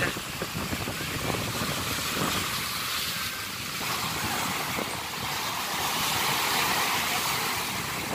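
Small waves washing against a rock seawall, a steady wash of water noise with wind on the microphone.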